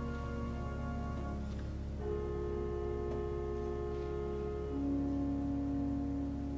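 Organ playing slow, sustained chords; the chord changes about two seconds in and again near five seconds, each held steadily.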